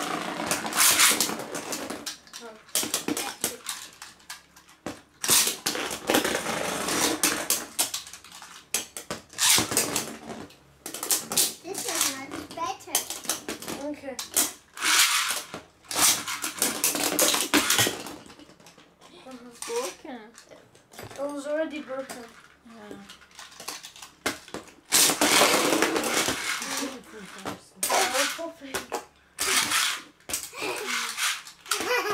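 Plastic Beyblade spinning tops launched with ripcord launchers, spinning and clashing against each other inside a plastic tub lid, with repeated rattling clatter and sharp clicks that come in several long runs.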